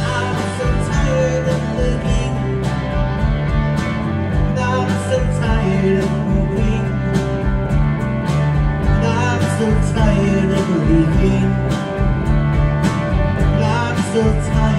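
Live rock band playing: electric guitar and electric bass over a drum kit, with steady, evenly spaced drum and cymbal hits.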